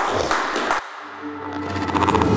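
Audience applause that cuts off suddenly under a second in, giving way to the start of the outro music: low, steady held tones that swell in loudness.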